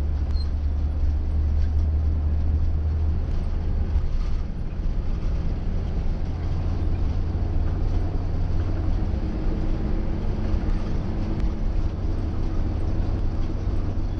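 Steady low rumble of a moving coach bus, its engine and road noise heard from inside the passenger cabin.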